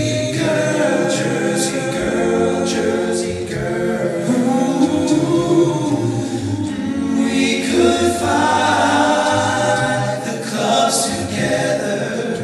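Male a cappella vocal group singing in close harmony over a low sung bass line, with short percussive snaps recurring about once a second, heard from the audience in a theatre hall.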